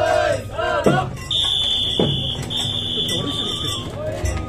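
Japanese festival float music: a man's drawn-out chant with a wavering voice, then a high held flute note, with drum strikes about a second apart.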